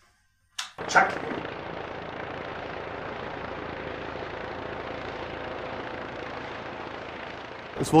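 Helicopter flying overhead: a steady rush of rotor and engine noise that begins abruptly about a second in, after a short sound at the very start.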